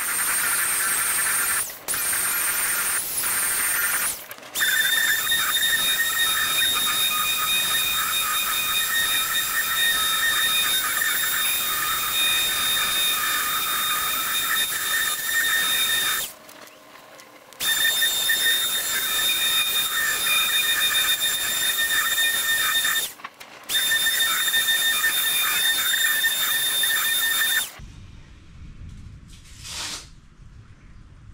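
Random orbital sander running on a hardwood tabletop with a high-pitched whine. It stops briefly about halfway through and again a few seconds later, then switches off shortly before the end.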